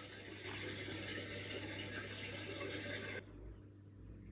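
Dishwasher running, a steady wash of water spraying inside it that cuts off suddenly about three seconds in.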